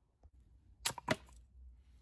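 Two sharp knocks about a quarter of a second apart, as a steel throwing hatchet lodged in a wooden chopping block is gripped and jarred loose, followed by faint handling noise.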